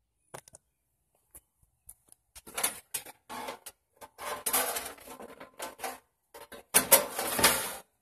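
Bent steel-wire leg being jammed through the holes of a portable gas grill's metal firebox: a run of metallic clicks, scrapes and rattles, loudest near the end.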